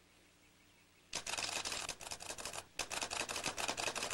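Two loud bursts of dense, rapid crackling noise, the first starting about a second in and lasting about a second and a half, the second following a brief break and stopping near the end.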